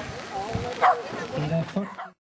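A dog barking a few times during an agility run, mixed with a person's voice calling. The sound cuts off abruptly at the end.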